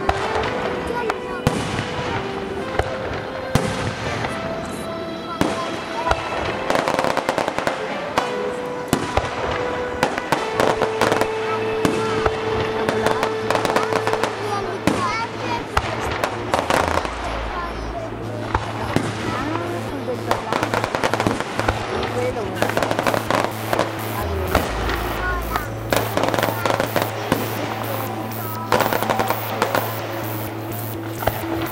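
Aerial firework shells bursting one after another, with crackling sparks between the bangs. The bursts come thicker and faster toward the end. Music with held notes and a steady bass plays underneath from about ten seconds in.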